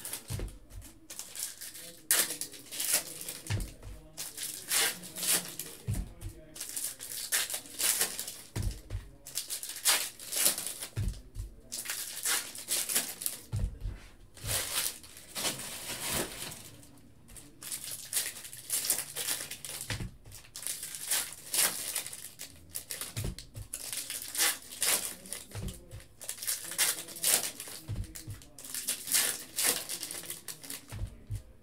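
Foil trading-card pack wrappers crinkling and tearing open in repeated bursts, with cards shuffled in the hands, and a few soft thuds.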